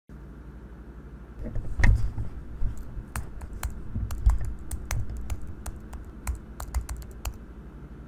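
Laptop keyboard being typed on: irregular keystroke clicks starting about one and a half seconds in and stopping shortly before the end, with one heavier knock about two seconds in.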